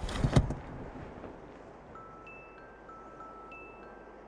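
A brief loud rush of noise with a low thump in the first half-second, then from about two seconds in, soft high bell-like notes in a slow stepping melody, a higher chime sounding about once every second and a quarter.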